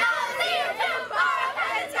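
Young girls' voices chattering and talking over one another.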